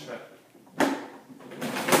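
Drawer and compartment of a metal airline cabin trolley being pushed shut: a sharp clunk about a second in, then a longer scrape ending in a louder knock near the end.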